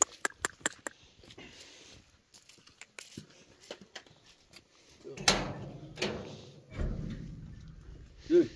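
Footsteps on stony ground with a run of small sharp clicks and knocks, then a louder rumbling rattle lasting about a second and a half, starting about five seconds in.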